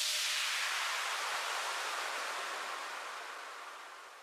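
A wash of hiss-like white noise, the closing sweep effect of an electronic dance mix, fading slowly away.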